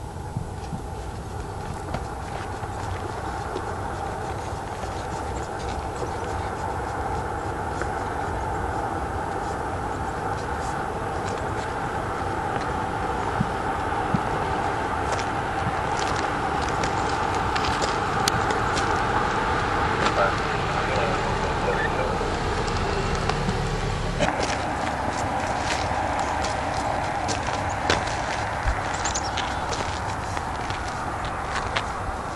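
Road ambience with indistinct voices and a car driving past, the noise slowly swelling to a peak just past the middle.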